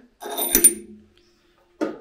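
Steel spacer rings clinking as they are slid down onto the vertical cutter spindle of a planer-moulder, with a bright metallic ring about half a second in that dies away within a second.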